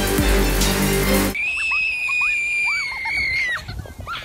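Background music that stops abruptly about a second in. Then a child's long, high scream, held for about two seconds and cut off suddenly, while riding a snow tube down a hill.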